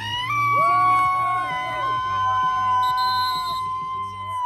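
Several men giving long, sustained celebratory howls, one voice held from the start and a second joining about half a second in, over a steady backing beat.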